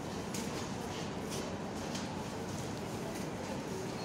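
Steady supermarket background noise: a low hum of the store with faint distant chatter and a few light footsteps.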